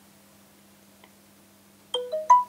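Quiet room tone with a faint steady hum and a soft tick about a second in. Right at the end, a Samsung Galaxy Note 8's notification chime starts, a run of short pitched notes, as the phone pops up its Bluetooth pairing request.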